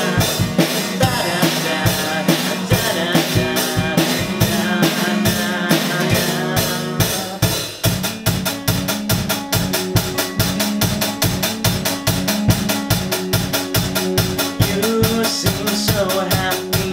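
Live band music: a strummed acoustic guitar and a drum kit with a male lead vocal. There is a brief dip about halfway through, after which the drums keep an even, quick beat.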